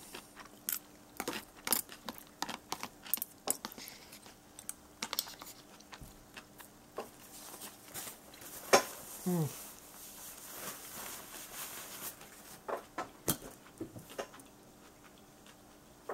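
A person chewing a mouthful of ramen noodles close to the microphone, with many small, irregular wet mouth clicks. A short "hmm" comes about nine seconds in.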